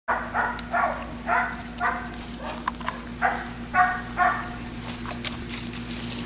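Puppy giving a quick run of short, high yaps during tug-of-war play, about nine in the first four and a half seconds, with rustling and scuffling after them.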